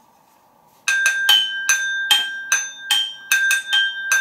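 A ceramic mug and a stemmed wine glass tapped with a spoon as makeshift percussion, in a quick steady rhythm starting about a second in. Each strike clinks, and a high ringing tone carries on between the strikes.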